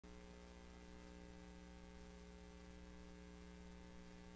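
Near silence with a faint, steady electrical mains hum, a buzz of evenly spaced low tones that never changes.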